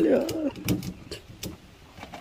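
Ratchet strap being worked tight over a scooter in a pickup bed: a few sharp mechanical clicks about a second in, after a short bit of voice.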